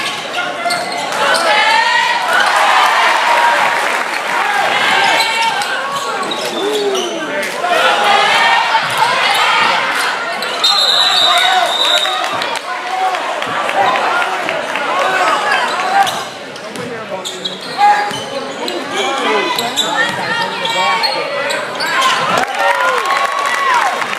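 A basketball bouncing on a gym floor among the many voices of players and crowd in a large echoing hall. A steady high referee's whistle sounds for about a second, about eleven seconds in.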